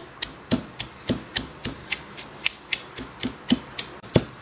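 Hand-operated food chopper being worked over and over, its mechanism and blades clicking and knocking about three or four times a second as they chop cumin seeds, green chillies, garlic and coconut into a masala.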